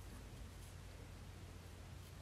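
Near silence: faint steady room tone with a low hiss.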